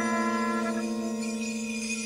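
Live early-1970s jazz-fusion band music: a sustained chord of steady held tones, its upper notes thinning out about two-thirds of the way through while the low tone holds.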